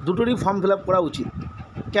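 A person's voice speaking, with a faint steady high tone underneath.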